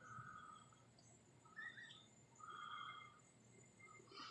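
Near silence, with a few faint, short high-pitched animal calls, one near the start and another about two and a half seconds in, and a brief sliding chirp between them.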